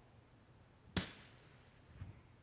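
A single sharp click about a second in, with a short fading tail; otherwise quiet room tone.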